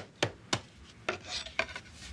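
Grip tape being pressed and rubbed down by hand onto a wooden skateboard deck: two sharp taps near the start, then a short scratchy rub.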